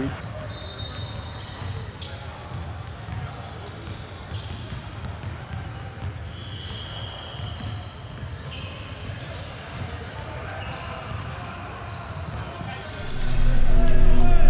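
Gym ambience: basketballs bouncing on a hardwood court and distant voices echoing in a large hall, with a few brief high squeaks. Near the end, loud music with heavy bass comes in.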